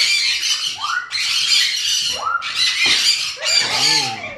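Parrot screeching: loud harsh squawks repeated about once a second, each starting with a short rising sweep, about four in a row.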